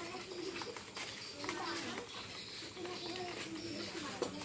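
Distant voices in a low murmur over a steady high chirring of crickets, with scattered light clicks and rustles from food being handled and wrapped at the stall.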